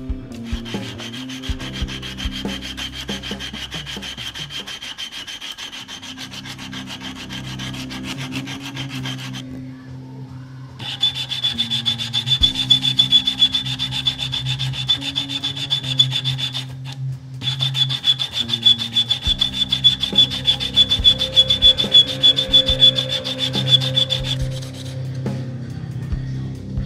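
A wooden ring blank clamped in a vise is being sanded by hand with an abrasive block. The rubbing runs in quick back-and-forth strokes, stops briefly twice, and is louder in the second half.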